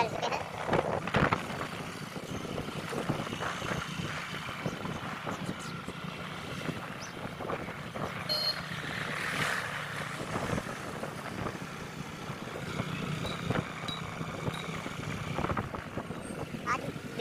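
Motorcycle engine running steadily while riding along a road, with road and wind noise from the ride.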